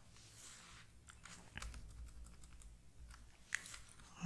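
Faint computer keyboard typing: a scattered handful of soft key clicks, the sharpest one near the end.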